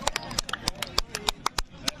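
A fast run of sharp clicks, about seven a second, with faint voices underneath.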